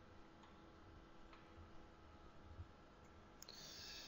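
Near silence: room tone with a faint steady hum, a couple of faint clicks and a faint hiss near the end.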